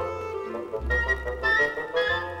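Instrumental background music: quick melodic notes over sustained low bass notes.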